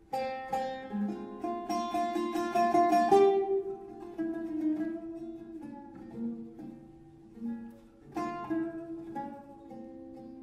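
Solo Arabic oud playing an improvised taqsim in maqam Nahawand. It opens with a fast, loud run of plucked notes lasting about three seconds, then slows to sparser single notes. A strong new attack comes about eight seconds in and rings away.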